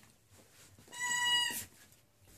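Puppy giving one short, high, steady squeal about a second in, lasting under a second.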